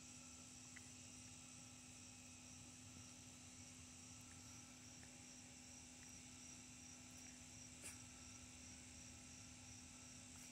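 Near silence with a faint, steady high-pitched chorus of crickets, and a single faint tick about eight seconds in.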